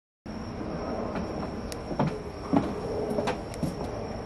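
Pub room ambience: a steady background hum with a thin high whine, and scattered sharp knocks and clinks, the loudest about two and a half seconds in. The sound starts after a moment of silence.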